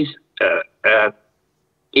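Two short, hesitant voiced syllables from a man, about half a second and a second in, heard over a video-call link.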